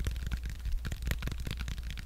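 Soft, irregular clicks and small taps of fingers handling a banana close to the microphone, over a steady low hum.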